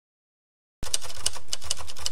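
Typing sound effect: a run of quick key clicks, about four a second and unevenly spaced, over a low hum, starting a little under a second in.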